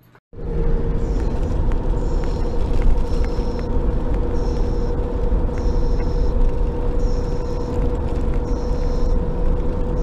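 Steady road rumble inside a moving car's cabin, with a constant hum and a faint high-pitched pulse that repeats about once a second.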